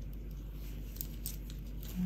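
Metal knitting needles clicking and tapping faintly against each other a few times as stitches are worked, over a steady low hum.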